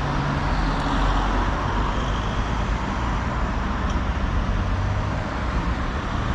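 Steady street traffic: cars driving past and a low engine hum underneath, with no distinct separate events.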